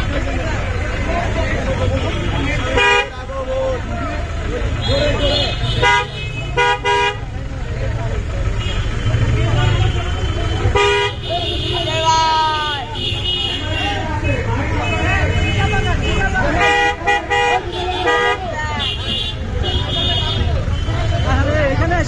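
Vehicle horns honking in several short blasts, some in quick pairs and clusters. They sound over the continuous chatter and shouting of a street crowd and the low rumble of a vehicle engine.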